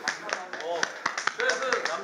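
A quick run of sharp taps, several to the second, among men's voices.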